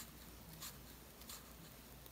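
Near silence with about three faint, soft rustles of a 1.8 mm crochet hook pulling fine crochet thread through as chain stitches are worked.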